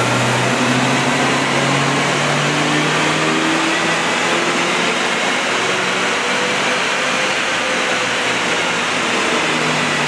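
Car engine running under load on a chassis dynamometer, its pitch climbing slowly through the first half, beneath a loud, steady rush of air from a large cooling fan.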